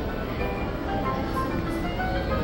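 Soft background music with short, chime-like notes over a low, steady hum.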